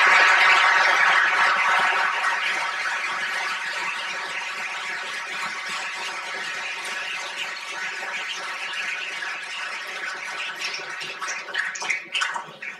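Audience applauding, loudest at first and slowly dying down.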